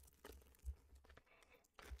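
Faint crinkling and tearing of a foil trading-card pack wrapper as it is ripped open, with a brief louder rustle a little under a second in.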